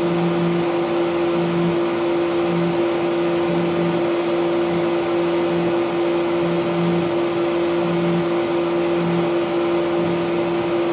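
Tormach 1100MX CNC mill engraving a patent number into a small knife-lock cover plate: the spindle runs with a steady whine over the hiss of flood coolant spraying onto the work. A lower hum swells and fades about once a second.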